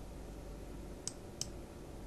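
Two sharp computer mouse clicks about a third of a second apart, over a faint steady low hum.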